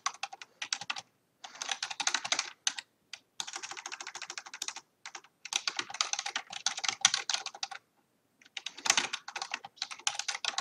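Computer keyboard being typed on fast, in quick runs of keystrokes broken by brief pauses.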